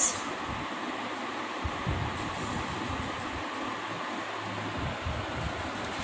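Steady background hiss, a constant room noise with no distinct sounds standing out.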